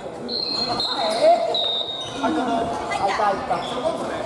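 Family badminton in a wooden-floored gymnasium: high squeaks of sports shoes on the court, short calls and voices from players, and a sharp hit about a second in, all with the echo of a large hall.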